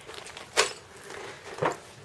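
Two brief handling sounds about a second apart, light knocks or rustles as small objects are picked up, over quiet room tone.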